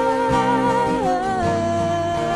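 A voice holding one long wordless note over a strummed Taylor acoustic guitar, the note stepping down in pitch about a second in.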